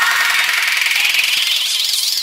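Electronic dance music build-up: a noise sweep rising steadily in pitch, with the bass and beat dropped out.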